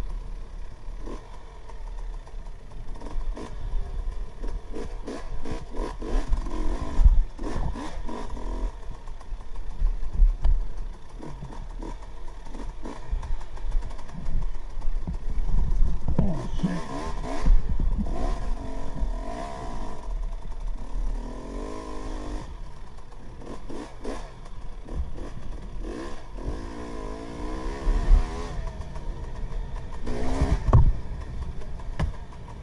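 KTM 300 XC-W two-stroke dirt bike engine revving up and down as it is ridden over rough trail, with clattering knocks from the bike over the ground. The pitch rises and falls in bursts of throttle, most clearly in the second half.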